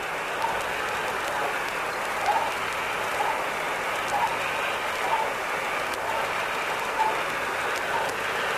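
Radio recording picked up from Sputnik 2: a steady hiss of static with faint pulses about once a second, which those who recorded it believed to be the heartbeat of the dog on board.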